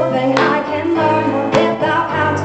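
Live band music: strummed guitar chords over a bass line, with a woman singing into a microphone.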